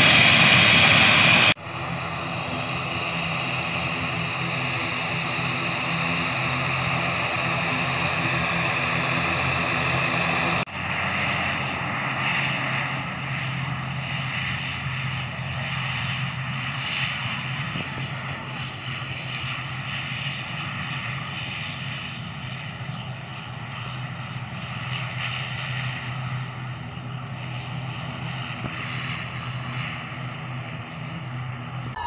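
ATR 72 twin-turboprop airliner's engines and propellers running with a steady drone and a hum of steady pitched tones as the plane taxis and rolls along the runway. Loud at first, it drops off suddenly about a second and a half in, with a brief break near eleven seconds.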